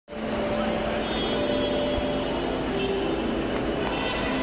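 Indistinct chatter of a waiting crowd over a steady background hum, with no single voice standing out.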